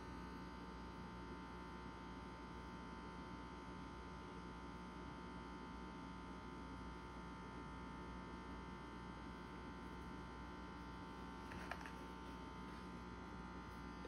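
Faint steady electrical hum of room tone, with one small tick near the end.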